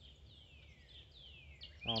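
A bird calling faintly: a run of thin whistled notes, each sliding down in pitch, over a low wind-like rumble.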